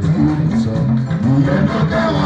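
Live band music with drum kit and keyboard playing, over low notes that slide up and down again and again.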